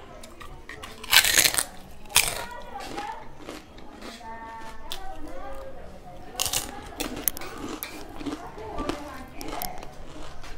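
Close-up eating sounds: a bite into a piece of food and chewing, with loud crunches and mouth smacks, the loudest crunches a second or two in.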